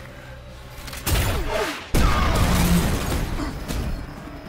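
Animated film sound effects: a sudden hit about a second in, then a loud explosion about two seconds in that keeps going, over film score music.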